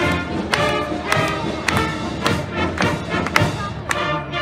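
Brass marching band playing a march, with a drum beat about twice a second under the brass.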